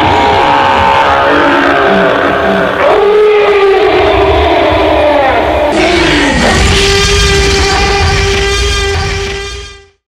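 Live axé band music ending on a long held note that fades out near the end.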